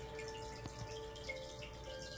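Aquarium filter outflow splashing and trickling steadily onto the surface of a turtle tank, with a faint steady hum beneath it.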